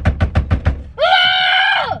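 A woman's drawn-out yell of frustration, held for about a second, coming right after a quick run of knocks or taps, about eight a second.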